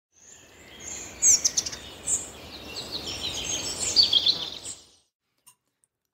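Birdsong: several birds chirping and calling over a soft outdoor background, fading in and stopping about five seconds in.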